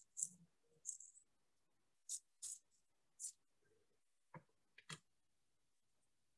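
Faint handling sounds at a sketchbook page: a scattering of short, scratchy swishes, then two light clicks near the end.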